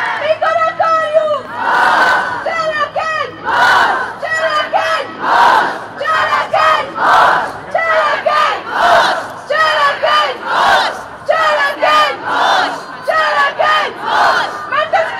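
Demonstrators chanting in call and response: a single amplified voice calls a short phrase and the crowd shouts back, a steady back-and-forth about every second and a half to two seconds.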